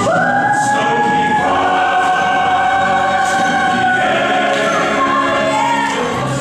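Musical-theatre singing: a high voice holds long notes that step down in pitch, with a choir and accompaniment behind it.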